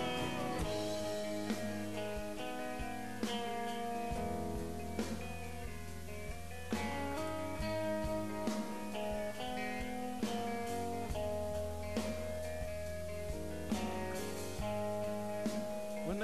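Rock band playing live, an instrumental passage between sung verses: guitars and bass holding chords over a slow drum beat, with a sharp snare hit about every second and three-quarters.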